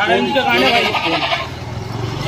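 A goat bleating: one long, quavering bleat that starts right away and fades after about a second and a half.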